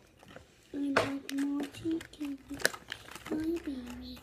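A girl's voice humming or singing a few short, level notes without words, starting about three-quarters of a second in, with a few light clicks and crinkles from handling the candy-kit packaging.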